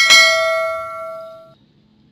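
A subscribe-button notification-bell sound effect: one bright bell chime struck once, ringing on in several clear tones and fading out about a second and a half in.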